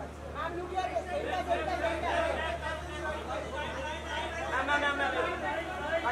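Overlapping voices of a group of photographers calling out, over a low steady hum.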